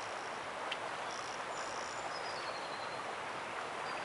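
Steady sound of a river flowing, with birds calling high above it: two short high notes a little after a second in, then a brief falling call.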